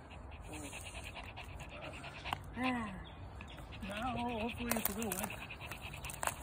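Two short voice-like vocal sounds with no words: a falling call about two and a half seconds in, then a wavering one lasting about a second, over a quiet background.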